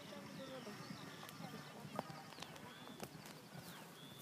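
Faint hoofbeats of a horse galloping on grass, heard from a distance.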